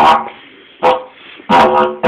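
Didgeridoo drone broken into short blasts: a held note that cuts off right at the start, a brief blast a little under a second in, and a longer one starting about halfway through.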